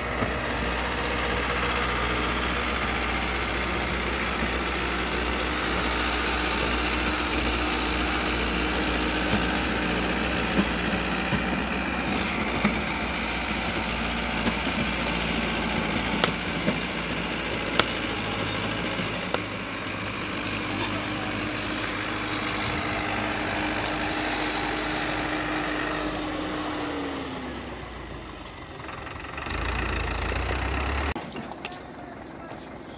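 Farmtrac 6060 tractor's diesel engine running steadily under load as it pulls a fully loaded trolley of stones uphill, with a few sharp knocks along the way. Near the end the engine note falls and the sound eases off.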